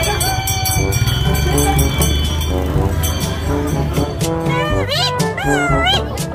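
Sundanese Benjang accompaniment music: steady low drum and gong-like notes under repeated pitched figures. A high, wavering, gliding melody line comes in about four seconds in.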